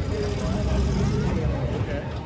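Monster truck engine running hard under load as the truck climbs over crushed cars, with a deep, steady drone. Voices of nearby spectators chat over it.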